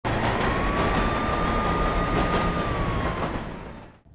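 Street traffic noise with a siren that rises, holds for about two seconds and falls away, the whole thing fading out near the end.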